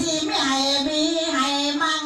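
A pleng Korat (Korat folk song) singer singing into a microphone, holding one long, slightly wavering note.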